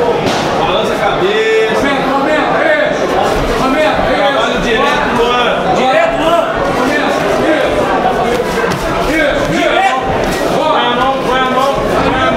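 Several people's voices talking and calling out over one another around a boxing ring, indistinct and continuous.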